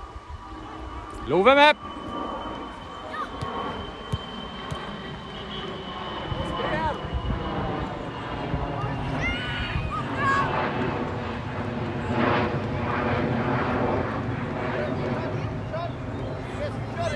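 Shouts and calls from players and spectators at a children's outdoor football match. One loud rising shout comes about a second and a half in, and shorter shouts follow over steady background noise, with a faint steady tone underneath for a few seconds.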